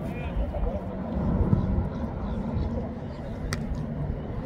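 Outdoor football training ambience: a steady low rumble with faint distant voices, and one sharp knock of a football being kicked about three and a half seconds in.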